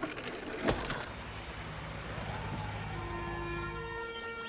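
A single thump about two-thirds of a second in, followed by a low steady rumble. Sustained musical tones come in about three seconds in.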